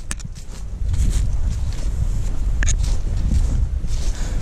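Footsteps through grass and dry leaves, with a steady low rumble of wind buffeting the microphone and a few sharp ticks.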